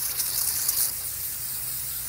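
Stream of water spraying onto a truck radiator's fins, a steady hiss that is brightest for about the first second, over a low steady hum.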